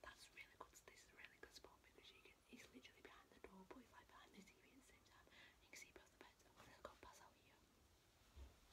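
A young woman whispering faintly.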